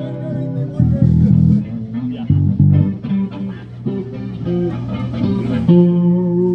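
Live band instruments playing bass guitar notes over keyboard, with held notes near the end.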